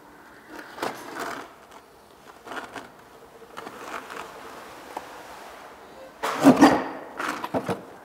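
Asphalt shingle being cut by hand on a plywood board: faint scraping strokes, then a louder rasping scrape lasting about a second, about six seconds in.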